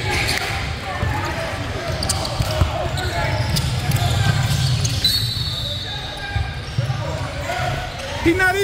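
Indoor basketball game sounds in a large gym: scattered voices of players and spectators, basketball bounces and footfalls on the hardwood court, over a steady low hum.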